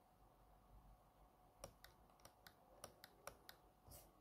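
Faint laptop keys being pressed: about nine separate clicks, starting about a second and a half in.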